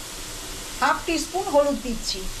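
Diced potatoes sizzling steadily as they fry in a pan. A voice speaks briefly from about a second in.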